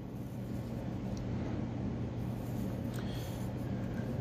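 Graphite pencil drawing on paper, a faint scratching of the lead over a steady low hum in the room.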